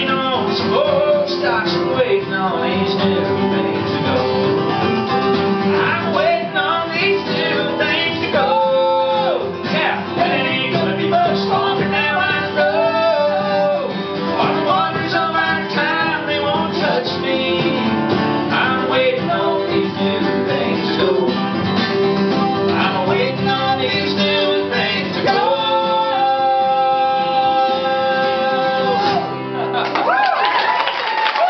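Male singer with acoustic guitar accompaniment in a live folk-country performance, the voice held on one long note near the end.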